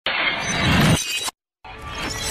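TV title-sequence music with glass-shattering sound effects: a loud hit with a heavy low end, a brief dead silence, then a second bright shatter burst near the end.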